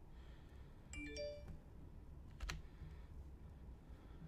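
A faint electronic notification chime of three quick rising notes about a second in, then a single sharp click a second or so later.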